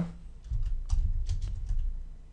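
Typing on a computer keyboard: a quick run of keystrokes beginning about half a second in.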